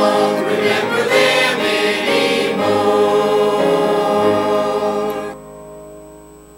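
Mixed church choir singing a gospel hymn. The singing stops about five seconds in, leaving a fainter held instrumental chord.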